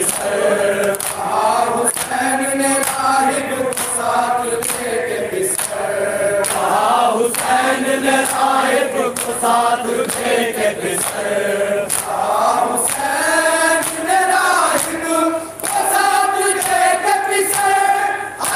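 Group of men chanting a noha together in unison, with sharp slaps of chest-beating (matam) striking through the chant.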